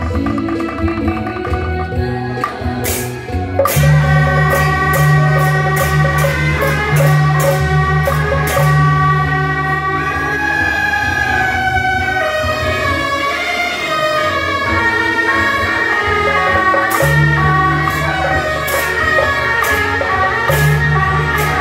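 Beiguan ensemble music: suona shawms play a loud, sustained melody over gong, cymbals and drums. The full band swells in about four seconds in, with repeated cymbal and gong strikes.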